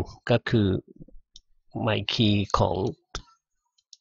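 A man talking in two short phrases, with one sharp click a little after three seconds in.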